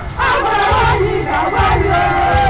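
A group of women's voices chanting together in a sung, gliding line, over low repeated drumming.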